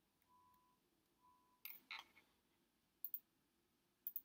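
Faint computer mouse clicks, with a quick pair of clicks about three seconds in; a faint short steady tone sounds twice in the first second and a half.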